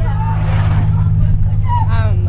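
Bus engine running with a steady low drone heard inside the cabin, with a voice starting near the end.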